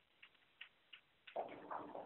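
A few faint clicks on a telephone conference line during a pause, then a louder rush of line noise past the halfway point.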